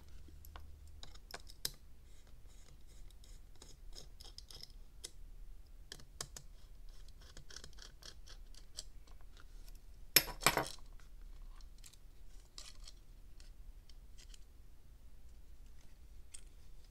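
Small screwdriver turning and scraping in the screws of a tiny whoop drone's plastic canopy, with scattered light clicks and handling of the plastic parts. One louder clatter comes a little past the middle.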